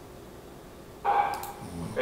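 A recorded sermon starting to play back through computer speakers: a man's voice comes in about a second in after a moment of quiet, with a drawn-out, echoing tone.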